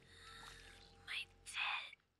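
Faint whispering: two short whispered sounds, the second longer, over a low steady hum.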